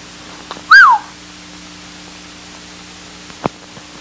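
A single short whistle about a second in, rising briefly and then falling in pitch, over a steady low hum from the old film soundtrack. A faint click comes near the end.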